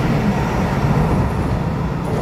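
Electric multiple-unit commuter train running past and pulling away through an underground station: a steady, loud rumble of wheels on rail, echoing off the platform walls.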